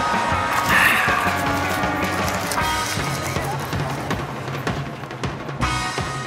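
Background music with held notes and light ticking percussion.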